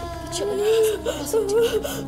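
A woman whimpering and sobbing, her voice wavering up and down in pitch, over a few steady held tones.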